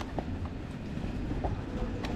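Low, uneven rumble of riding an electric unicycle over a rough dirt path, tyre noise mixed with wind on the microphone, with a few light clicks from bumps.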